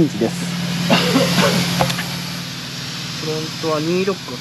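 A steady low engine hum with a hiss over it; a man's voice starts again near the end.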